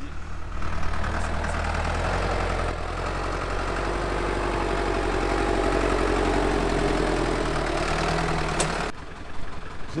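Farm tractor's diesel engine running steadily close by, a low even hum that cuts off abruptly about nine seconds in.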